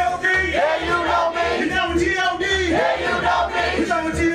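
Live amplified vocal performance: a man shouting chant-like lines into a handheld microphone, with a crowd of voices joining in, over a steady low thumping beat.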